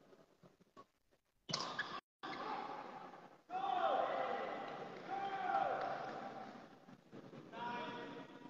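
Indistinct voices echoing in a large indoor sports hall, starting suddenly about a second and a half in after near silence.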